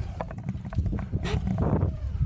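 BMX bike riding on plywood ramps: tyres rolling, with a run of irregular knocks and clicks from the bike on the wooden surface, over a steady low rumble of wind on the action camera's microphone.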